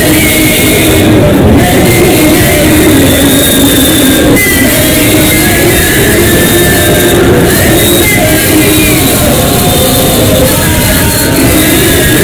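A group of boys singing an Islamic hymn (ilahi) in unison into microphones, loud and continuous, amplified over a PA with a dense rumbling undertone.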